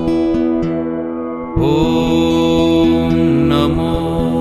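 Background music with a steady held drone under it; it goes softer for a moment, then a new phrase comes in sharply about a second and a half in.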